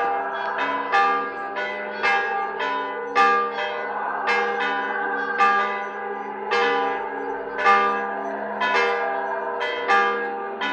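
Church bells of several pitches ringing in a steady, repeating peal. The strokes fall about two to three a second, with a louder stroke roughly once a second.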